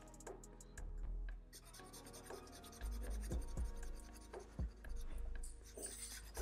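Felt-tip marker rubbing and scratching on paper in a series of short irregular strokes as an area is shaded in, over soft background music.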